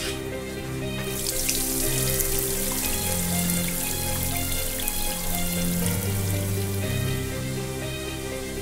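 Water from a shower running and splashing onto the shower floor, starting about a second in, under slow film music with long held notes.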